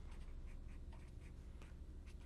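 Marker pen writing on paper: faint scratching of short pen strokes in quick succession.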